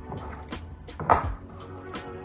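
Lo-fi background music with a steady beat, and about a second in a short, loud bump of handling noise.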